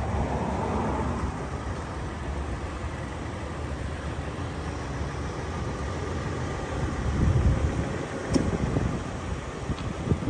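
Outdoor traffic noise from a nearby road with wind rumbling on the microphone, the low rumble surging louder in the last few seconds.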